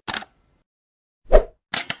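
Sound effects of an animated logo intro: a short tick, a loud pop about a second and a quarter in, then two quick clicks near the end.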